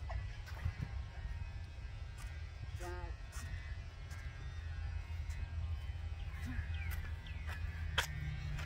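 Outdoor ambience: a steady low rumble with a few faint taps.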